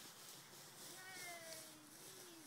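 A faint, drawn-out call from a small child, falling slightly in pitch, starting about halfway through, over a soft rustle of dry leaves underfoot.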